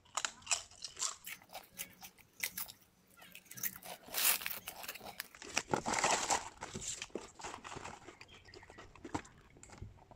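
Someone crunching and chewing thin, Pringle-like pressed potato chips (Mega Line Chips), a steady run of crisp crackles with a few louder bursts. The chips' cardboard box and foil bag rustle now and then as they are handled.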